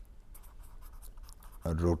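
Pen writing on paper, a faint run of short scratchy strokes as letters are written out.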